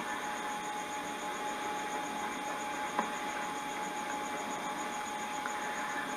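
Steady hiss with a faint constant tone, typical of an old camcorder's recording noise, and a single light tick about three seconds in.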